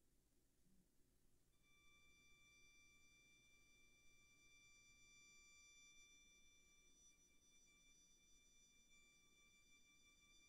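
Near silence, with a very faint high note held perfectly steady from about a second and a half in, most likely a violin sustaining a soft high tone.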